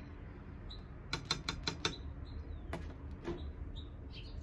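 Metal spoon clinking against a small glass bowl while stirring water: a quick run of about five sharp clinks, then two single knocks as the spoon is set down on a glass sheet.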